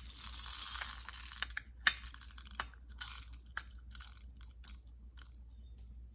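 Whole coffee beans poured out of a small dosing cup, a rattling pour for about a second and a half, followed by scattered clicks of beans and the cup, one of them sharp about two seconds in.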